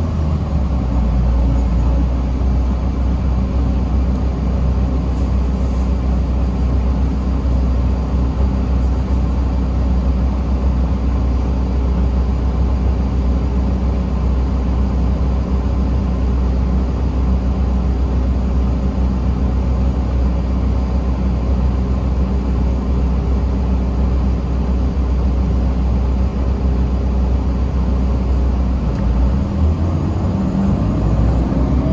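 Steady low engine hum from inside the cabin of a 2017 Gillig BRT 40-ft transit bus, idling while stopped. Near the end the engine note shifts as the bus begins to pull away.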